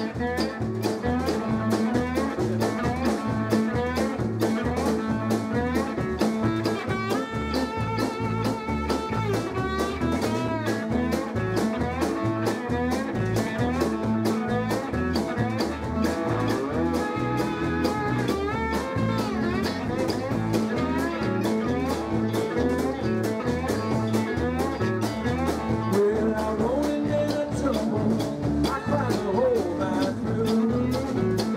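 Live blues band playing: electric guitars over a steady drum-kit beat.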